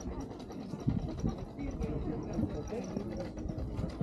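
Indistinct voices of people walking nearby, over a steady low rumble.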